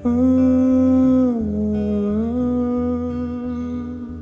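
A voice humming one long held note in a song, dipping in pitch about halfway through and rising back, over a quieter musical accompaniment.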